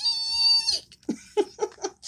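A woman's high-pitched squeal held for just under a second, then a few short giggling bursts.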